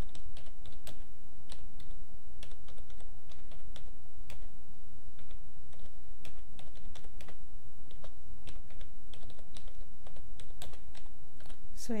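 Typing on a computer keyboard: irregular, quick key clicks over a steady low hum.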